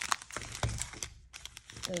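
Foil trading-card packs crinkling and crackling as they are shuffled and stacked by hand, with a soft low thump about half a second in as packs meet the wooden table.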